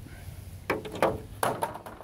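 Hard plastic TV back cover being handled: a few sharp clicks and short plastic rattles, starting about two-thirds of a second in.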